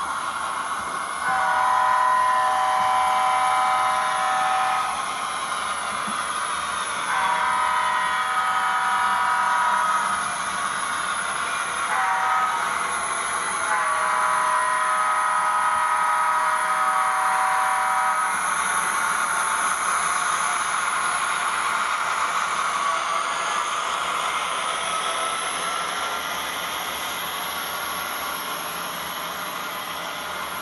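HO-scale model diesel locomotive's onboard sound sounding its horn in the grade-crossing pattern: two long blasts, a short one, then a long one. Under the horn runs a steady diesel engine and running sound, easing off slightly near the end.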